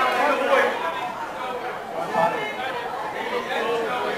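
Indistinct talk and chatter from several voices in a large hall, with no clear words.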